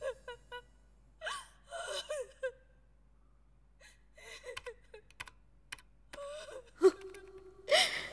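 Quiet, short vocal sounds: scattered gasps and murmured exclamations rather than spoken sentences.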